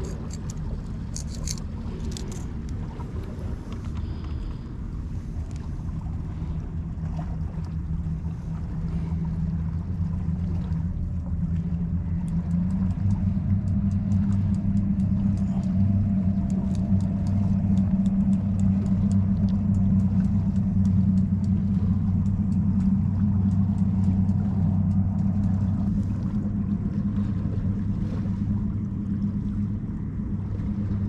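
A distant engine's steady low drone that grows louder from about twelve seconds in, holds, and eases off near the end. A few light clicks come in the first few seconds.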